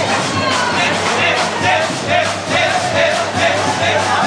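Street-parade percussion band drumming in a steady rhythm, with voices over it.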